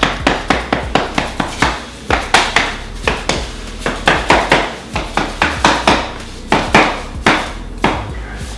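Rubber mallet tapping on a flooring block hooked over the end of a luxury vinyl plank, a steady run of sharp taps about three or four a second, knocking the plank's end click-lock joint closed.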